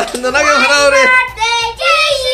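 A young child's high-pitched voice in long, drawn-out sung notes, broken briefly about halfway.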